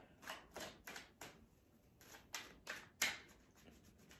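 Tarot cards being shuffled overhand: a run of soft, quick card slaps and swishes, about seven in all, with a short pause in the middle.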